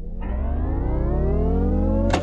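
Music intro: a synthesizer riser gliding steadily upward in pitch and growing louder over a deep bass swell, building up to the drop of a drill hip-hop beat.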